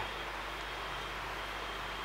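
Steady low background noise with a faint low hum, no distinct events: room tone between sentences.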